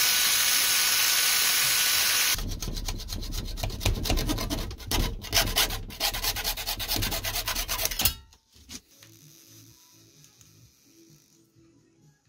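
A cordless drill runs at a steady speed with a constant whine, drilling through a clear plastic cup, for a little over two seconds. A hacksaw then cuts with back-and-forth scraping strokes for about six seconds.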